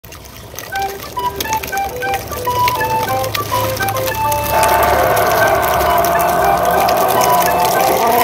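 Background music: a tinkly melody of short, separate notes that turns fuller and louder about halfway through.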